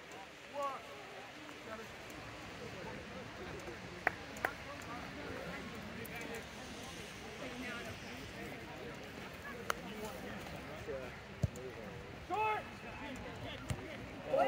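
Faint, indistinct voices of players and onlookers calling across an open rugby field, with a few short sharp clicks.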